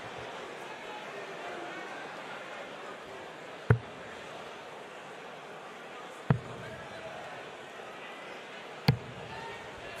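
Three darts striking a bristle dartboard one at a time, about two and a half seconds apart, each a short sharp thud. Steady background noise underneath.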